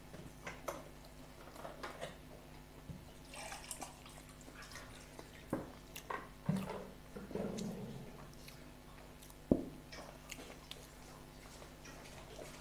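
Close-up eating sounds: chewing, wet mouth noises and crackles of fried samosa pastry being torn by hand, with a few sharper knocks against a faint steady hum.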